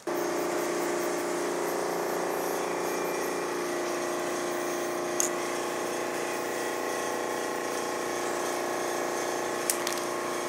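Aerosol spray paint can hissing steadily as it lays down black outline paint, starting suddenly, with a faint click about halfway through and another near the end.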